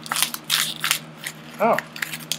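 Plastic blister pack of a toothbrush crackling and crunching in a quick run of sharp bursts as it is forced open by hand, its paper backing card ripping off.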